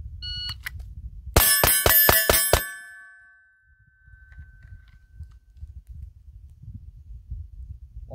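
A shot timer's start beep, then a little over a second later six rapid pistol shots from a Smith & Wesson M&P 2.0 Metal, about a quarter second apart. A steel target rings after the shots and fades over a few seconds. Wind rumbles on the microphone underneath.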